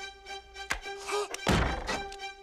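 Orchestral score holding a sustained string note, with a sharp click a little before the middle and a louder dull thunk of an impact near the end, lasting under half a second.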